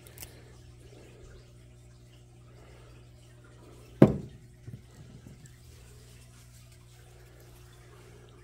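Objects being handled on a workbench: one sharp knock about halfway through and a softer knock just after, over a steady low hum.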